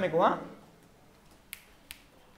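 A man's short spoken syllable, then quiet, then two short sharp clicks less than half a second apart near the end.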